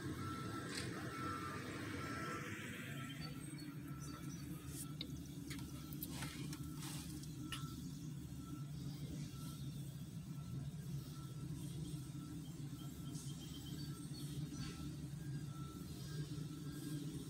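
A slow-moving railroad work train loaded with used ties approaching, a steady low rumble that grows a little stronger about two seconds in. A faint high beep repeats about once a second throughout, with a few light clicks near the middle.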